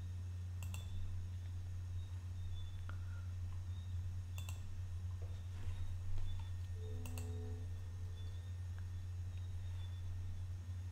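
Computer mouse clicking three times, sharp single clicks a few seconds apart, over a steady low electrical hum.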